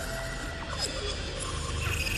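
Faint background music of a few sustained electronic tones over a low hum and hiss.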